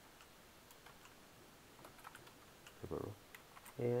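Faint computer keyboard typing: scattered, irregular key clicks, most of them close together about two seconds in.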